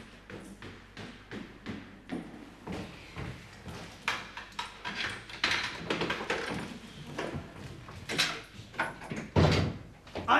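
A run of irregular knocks and thumps, sparse at first and growing denser and louder about four seconds in, with a heavier low thump near the end.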